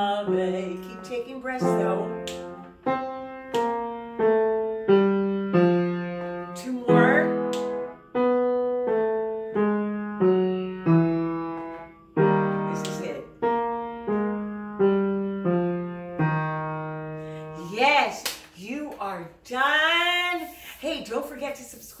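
Upright piano playing a vocal-exercise accompaniment: short groups of struck notes repeated again and again, each group shifted in pitch. Near the end the piano stops and a voice makes a few short sliding pitch swoops.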